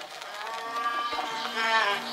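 A long, moo-like lowing call with wavering pitch that bends near the end, set over a steady low tone in a sample-based experimental beat track.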